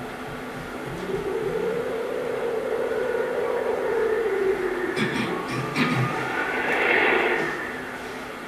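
Soundtrack of a film excerpt played over loudspeakers: a sustained note that swells and falls away, then a few sharp knocks and a brighter passage that fades near the end.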